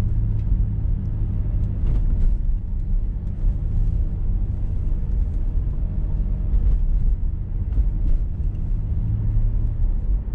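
Steady low rumble of a car's engine and road noise heard from inside the cabin while driving slowly.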